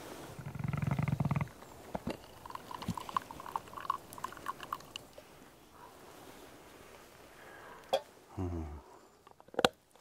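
Plunger coffee press pushed down to the end of its stroke over a mug: a low groan from the plunger for about a second, then a run of short sputtering hisses as air is forced through the wet grounds. Near the end come two sharp clicks as the press is lifted off and set down in a steel pot.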